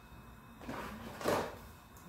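A short metallic scrape and clatter as a metal box grater is picked up off a granite worktop, loudest about a second in.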